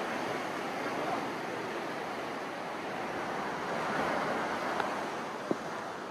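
Sea surf breaking and washing over the rocks below, a steady rushing sound without a break.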